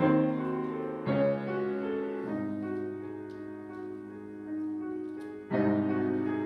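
Grand piano played solo in a slow passage: chords struck at the start, about a second in, again a second later, and loudest near the end, each left to ring on.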